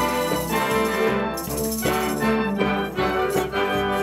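High-school marching band playing live: sustained brass chords over drums, with tambourines shaken and struck by the colour guard.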